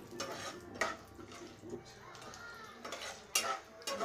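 A spoon scraping and clinking against a steel kadai as peanuts and chana dal are stirred in oil, with several sharp clinks at irregular moments, the loudest near the end.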